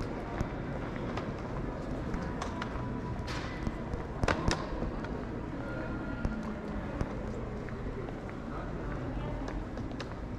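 Airport check-in hall ambience: a steady background hum with indistinct voices and the footsteps of someone walking, and a short cluster of sharp knocks about four seconds in.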